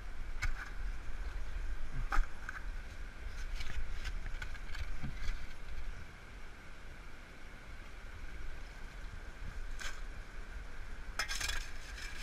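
Shallow creek water running, with a few scattered knocks and scrapes as a shovel digs gravel under the water, over a steady low rumble on the microphone.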